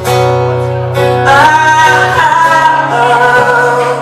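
Acoustic guitar strummed, with a strum at the start and another about a second in, then a man singing a long line over the guitar.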